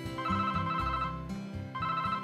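Mobile phone ringing with a warbling electronic ring. One ring lasts about a second, and the next begins near the end.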